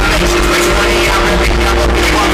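Loud live hip-hop concert music through an arena sound system, with heavy bass and one held note. There is no rapping at this moment.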